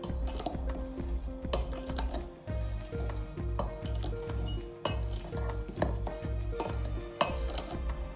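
Metal spoon stirring dry cake ingredients in a stainless steel mixing bowl, clinking repeatedly against the sides. Background music with a steady beat plays underneath.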